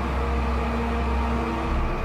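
Deep, steady rumble of a rocket lifting off, under sustained notes of ominous background music.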